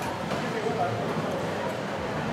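Steady, indistinct background chatter of voices in a busy eatery, with no clear nearby speech.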